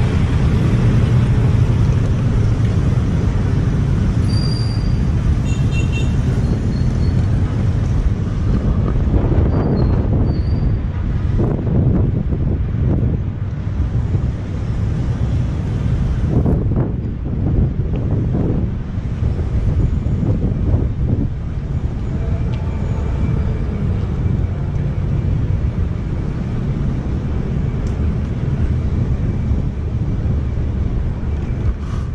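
Wind rushing over the microphone of a camera riding on a moving bicycle, a steady low rumble, mixed with the sound of city street traffic.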